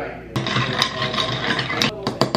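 Iced coffee being stirred in a glass to mix in the creamer, with a busy run of quick clicks and rattles starting about a third of a second in.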